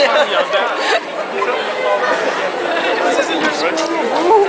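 Several people talking at once close to the microphone, overlapping audience chatter in a large hall; no band music is playing.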